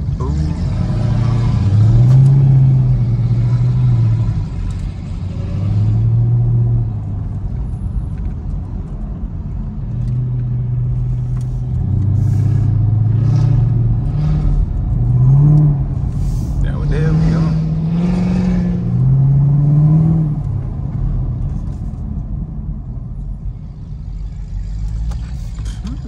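Chevrolet Camaro ZL1's supercharged V8 heard from inside the cabin. Its engine note rises and falls in several surges of a few seconds each as the car accelerates and eases off.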